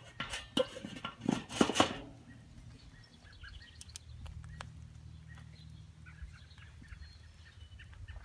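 Metal clattering and clanking in the first two seconds as the lid and stainless KettlePizza insert of a Weber kettle grill are handled and set in place, the last clanks the loudest. After that only a faint low background with a few small ticks.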